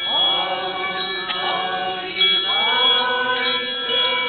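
A group of voices singing a slow religious hymn in unison, in long held phrases, with a new phrase starting about halfway through.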